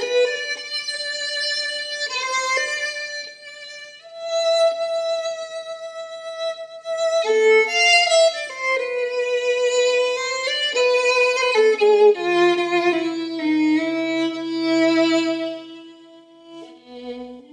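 Background music: a slow violin melody of long held notes, with a lower string line joining beneath it near the end.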